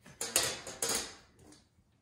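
A few short clatters and rustles as a straightedge ruler and a rotary cutter are moved aside on a leather hide and a freshly cut leather strip is lifted free: three quick knocks in the first second, then fading out.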